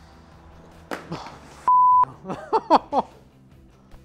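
A short, steady TV censor bleep, a single tone lasting about a third of a second, about two seconds in. It covers a swear word in a blooper, followed by a few quick bursts of voice.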